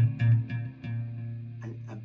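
Electric hollow-body guitar, tuned down a whole step, struck twice near the start and left ringing: a D minor chord with a B flat in the bass.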